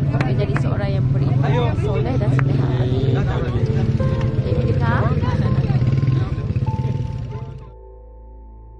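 Outdoor crowd voices talking over a loud, steady low rumble. Soft background music comes in about halfway through, and the outdoor sound fades out near the end, leaving only the music.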